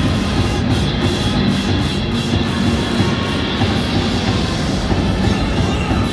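Loud music with drums played over a domed ballpark's public-address system during the video-board show before a batter comes up.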